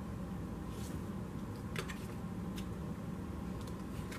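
A few light clicks of tarot cards being handled and laid on a table, over a steady low room hum.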